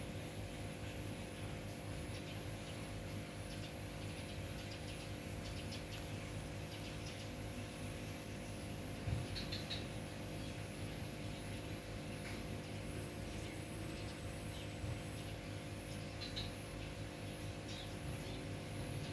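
Steady outdoor background hum with a few short, high bird chirps now and then, and a single brief knock about nine seconds in.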